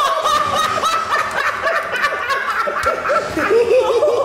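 Several people laughing together, many voices overlapping in quick repeated pulses of laughter.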